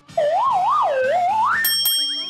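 A whistle-like cartoon sound effect that warbles up and down twice, then slides up in pitch and ends in a short bright chime, over light background music.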